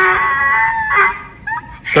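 A farm animal's long call: one held, pitched note of about a second that falls away, with a short call right after it.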